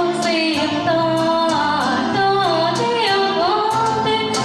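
A girl singing a pop song into a microphone over a backing track with a steady percussion beat; her voice carries a melody with smooth glides between notes.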